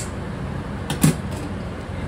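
A single light knock about a second in as the metal saucepan with its wire whisk is handled over a glass baking dish, over a steady low hum.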